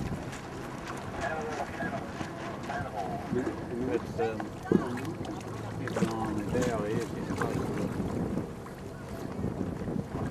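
Wind on the microphone aboard a small motor boat on choppy water, over a low steady hum from the boat's engine, with indistinct voices of people aboard. A single sharp knock comes a little before halfway through.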